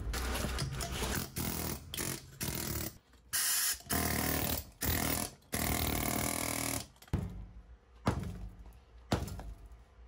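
Handheld pneumatic air hammer chipping a concrete floor. A rough stretch of rapid knocks comes first, then four short bursts of steady running, each half a second to a second long, then a few quieter knocks of loose concrete.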